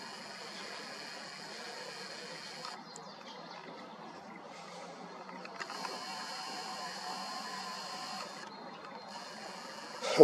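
Zoom lens motor of a Nikon Coolpix P1000 whirring faintly, picked up by the camera's built-in microphone while the lens zooms out and back in. It runs in two stretches with a pause of a couple of seconds between them.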